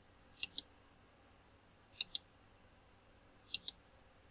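Computer mouse button clicked three times, about a second and a half apart, each click a sharp pair of sounds from press and release.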